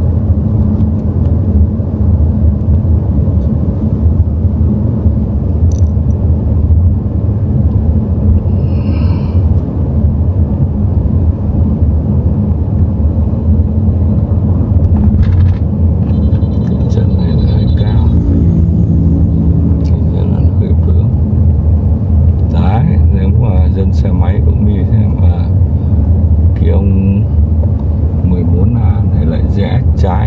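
Steady low rumble of road and tyre noise heard inside the cabin of a car driving along a highway.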